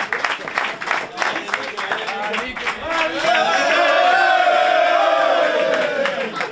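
A group of men clapping in a small tiled room, then, from about three seconds in, several voices joining in one long, loud, drawn-out group cheer that ends near the close.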